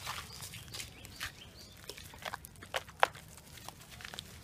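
Footsteps in sandals on a dirt path with leaf litter: irregular scuffs and crunches, a few each second, with one sharper crunch about three seconds in.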